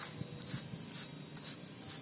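Hand trigger spray bottle squirting in short hissing bursts, about five in the two seconds, one per pull of the trigger.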